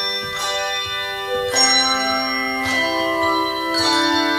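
Handbell choir ringing a hymn-like piece in chords: groups of bronze handbells struck together about once a second, each chord left to ring on into the next.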